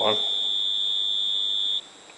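Timing fixture's steady, high-pitched signal tone, which cuts off suddenly near the end. The cut-off marks the contact-breaker points of a Lucas 4-lobe distributor switching as the cam is turned to an F mark.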